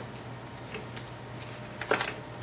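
Handling of a plastic page-protector pocket and a cardstock map piece being slid into it: a sharp click at the start, a few faint ticks, and a short crinkling rustle near the end.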